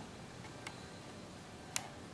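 Two faint, sharp clicks about a second apart, the second one louder, over quiet room tone.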